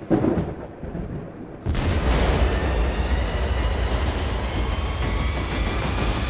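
Outro sound effects over a faint music bed: a boom right at the start that dies away. Then, just under two seconds in, a loud deep rumble with a hiss starts suddenly and keeps going.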